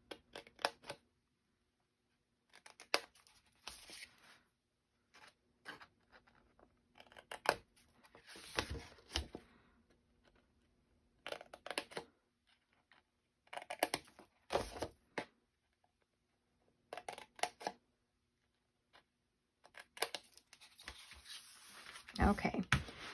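Scissors snipping small notches out of scored cardstock: short, scattered snips with pauses between, to take bulk out of where the folds meet.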